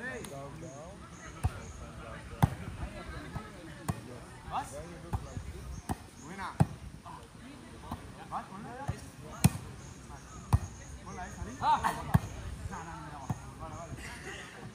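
A volleyball being struck by hands over and over in a rally on sand, about eight sharp slaps a second or so apart, with players calling out to each other between hits.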